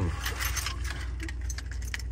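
Keys jingling with light scattered clinks inside a pickup's cab, over the low steady hum of the vehicle's engine.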